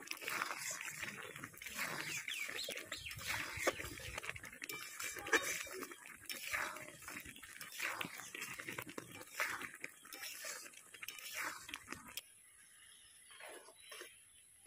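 Semolina being stirred into boiling ghee, sugar and mango liquid in an aluminium pan: irregular bubbling and spluttering with ladle strokes against the pan. The sound drops off suddenly about twelve seconds in, leaving only a few quieter scrapes.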